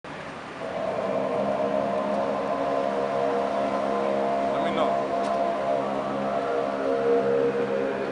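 An unidentified steady droning noise, a held chord of several tones that starts within the first second and goes on without a break.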